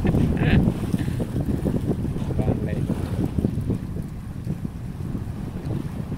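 Wind buffeting the microphone: a steady low rumble, with brief snatches of faint voices in the first half.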